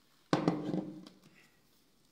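A drinking glass set down on a wooden surface: one sudden knock about a third of a second in, dying away over about a second.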